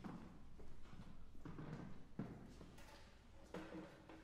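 Faint scattered thuds and taps: footsteps and light knocks on a wooden stage floor.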